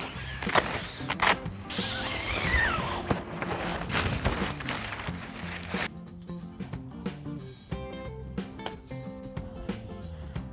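Background music over rustling fabric and sharp clicks as a pop-up canopy's awning is unfastened and pulled off the frame, which stops abruptly about six seconds in.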